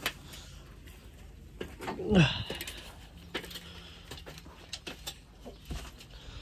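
Boots knocking and clicking on the rungs of an aluminium ladder while climbing down it, irregular knocks through the whole span. A brief falling voice-like sound about two seconds in.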